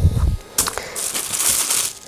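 Tissue-paper sewing pattern pinned onto linen, rustling and crinkling as it is set down on the cutting mat with a thump at the start and then smoothed flat by hand.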